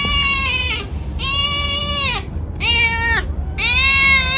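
An animal's long drawn-out calls, one after another with short gaps, each held at a steady pitch for about a second before dropping away at the end.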